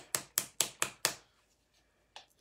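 Five quick sharp knocks in a row, about four a second, from a small plastic bottle of white craft paint being shaken.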